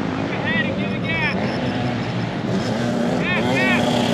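Small dirt bikes running out on the motocross track, a steady engine drone that wavers slightly in pitch, with short high chirps twice near the start and twice near the end.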